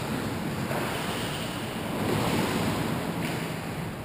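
Indoor ice-rink ambience during a hockey game: a steady, echoing wash of skates on ice and distant play, swelling briefly about halfway through.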